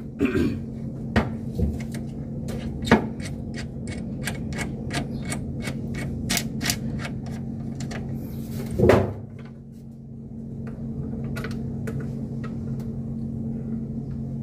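Metal clicks and knocks from work on the mounting bolts of a split-type air conditioner's outdoor unit on its wall bracket. In the middle is a quick run of clicks, about four a second, and a louder knock comes just before the end of it. A steady low hum runs underneath.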